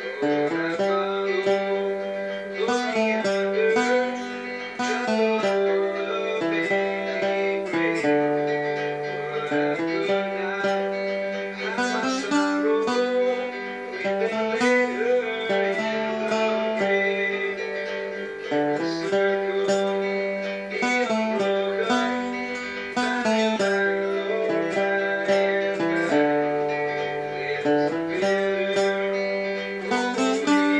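Tenor guitar strummed along with a recorded instrumental backing track: a steady chord rhythm under a melody of held, sliding notes.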